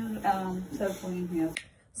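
Indistinct voices talking, broken off by a single sharp click about three quarters of the way through, after which the sound drops to near silence. The click falls where the video cuts between scenes.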